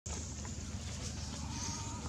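Baby macaque crying: one thin, drawn-out call about halfway through, faint over a steady low background rumble.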